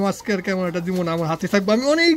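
A person talking without pause, in a voice of fairly high pitch.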